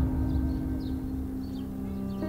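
Film score: the fading tail of a deep gong-like hit, a low steady ringing that slowly dies away, with faint bird chirps over it.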